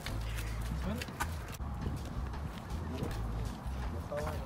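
Footsteps on pavement, heard as a few sharp clicks, over a steady low rumble of wind on the phone's microphone, with faint voices.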